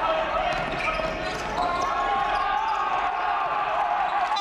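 Basketball being dribbled on a hardwood court during live play, in a series of short bounces, with players' voices calling out in a large echoing gym.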